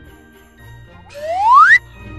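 A rising whistle, like a slide-whistle sound effect: one smooth upward-gliding tone about a second in, lasting under a second and cutting off suddenly.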